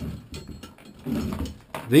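A large steel Conibear body-grip trap clicking and rattling as it is handled while a rope is threaded up through its coil spring. A few sharp metal clicks come in the first second.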